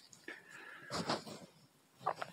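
A person's faint, slightly wheezy breath, loudest about a second in.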